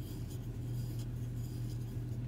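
Soft, irregular scratching and rustling of cotton yarn being pulled through by a wooden crochet hook as chain stitches are worked, over a steady low hum.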